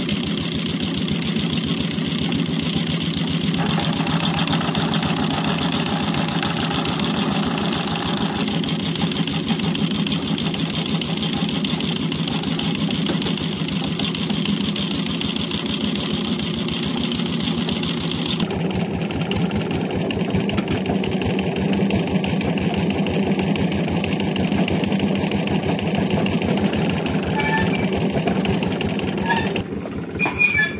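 Stationary engine on a tube-well drilling rig running steadily at constant speed with a rapid, even beat.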